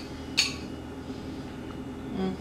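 A metal spoon clinks once against a glass bowl of yogurt, a single short, bright tap with a brief ring about half a second in, over quiet room tone.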